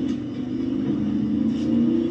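A car engine running, a low steady rumble drifting slightly in pitch, from a TV episode's soundtrack playing in the room.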